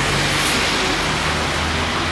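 Steady street traffic noise, with a faint low hum under it.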